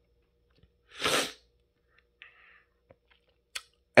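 A person's single short burst of breath about a second in, followed by a few faint ticks.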